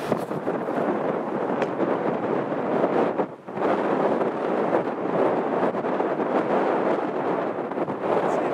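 Strong snowstorm wind buffeting the microphone: a loud, gusting rush of noise that drops away briefly about three seconds in.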